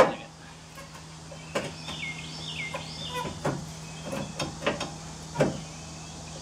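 Scattered light knocks and clunks as the radiator support bar of a 2015 Chevrolet Silverado is tugged and worked by hand; it is still held by something and will not come free.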